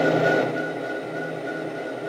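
Kato Sound Box playing an idling locomotive sound from its small speaker: a steady engine hum with hiss and a constant high tone.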